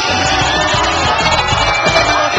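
Music playing steadily, with a crowd cheering and shouting beneath it.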